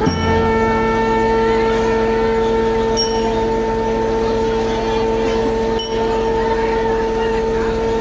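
Marching band's brass section, sousaphones, trumpets and horns, holding one long sustained note that comes in sharply and stays steady, with a brief dip about six seconds in.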